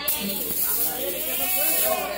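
A stage fog machine blasting smoke onto the floor: a sudden loud hiss that fades over about two seconds, with people talking underneath.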